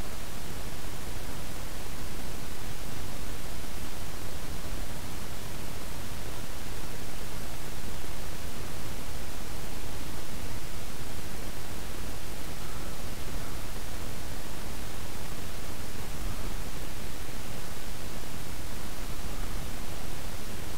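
Steady, even hiss of recording noise with no other sound.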